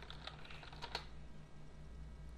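Faint keystrokes on a computer keyboard: a quick run of taps at the start and a couple more about a second in, over a faint steady hum.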